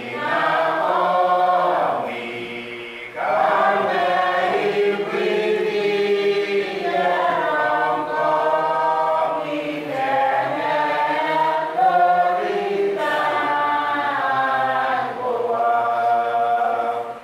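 A church congregation singing together in long held phrases, with a short pause between phrases about three seconds in.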